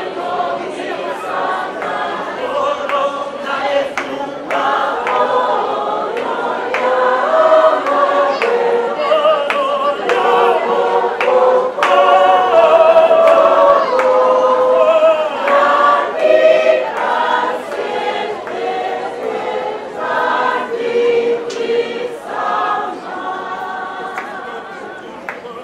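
A choir of many voices singing a hymn.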